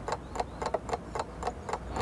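Quick, even ticking, about five clicks a second.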